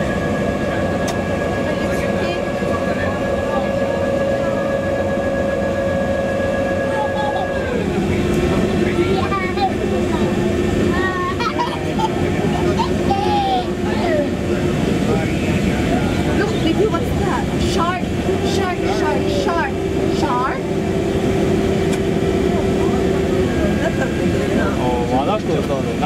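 Steady machinery hum inside a tourist submarine's cabin, with a whining tone that steps down in pitch about eight seconds in. Passengers' voices chatter over it.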